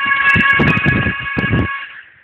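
Music from an FM broadcast station on 90.8 MHz, picked up at long range by sporadic-E propagation. It plays as a regular beat under sustained high, siren-like tones, thin and muffled by the radio's narrow sound. The sound fades away near the end.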